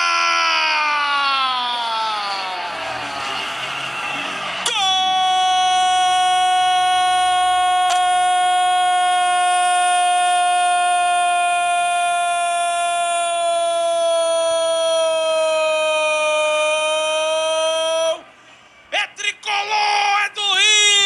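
Football commentator's goal call: a long shout that falls in pitch, then from about five seconds in a single note held for some thirteen seconds, sagging slightly before it breaks off near the end.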